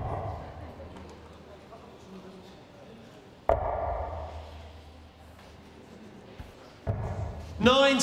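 Steel-tip darts striking a Winmau Blade 5 bristle dartboard: three sharp thuds, one right at the start, one about three and a half seconds in and one about a second before the end.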